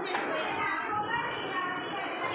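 Many young children chattering and calling out at once at play, a steady hubbub of overlapping small voices.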